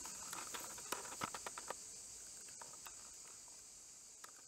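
Light rustles and crackles of dry leaf litter as a dog shifts about on the forest floor, a scattering of them in the first two seconds and then fewer. Under them runs a steady high-pitched insect drone.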